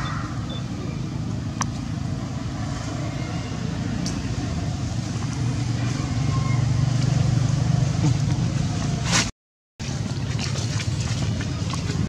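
A steady low rumble that swells about seven seconds in, with a few faint clicks. It cuts to dead silence for half a second near the ten-second mark, then returns.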